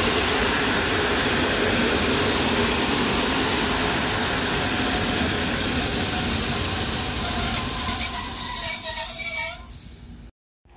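PKP Intercity passenger coaches rolling past on the rails, with a steady high-pitched wheel squeal over the rolling noise. The squeal grows louder near the end, then the sound cuts off suddenly.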